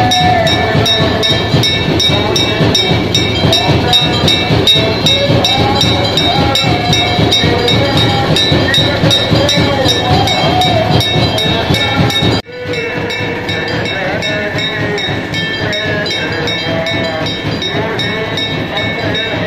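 Large brass temple bell rung rapidly by hand, about three to four strikes a second, its high ringing tones sustained, over a singing voice. The bell stops abruptly about twelve seconds in, leaving the singing voice.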